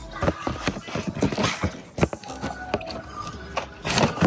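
Irregular clattering knocks from merchandise and a shopping cart being handled, over faint background music.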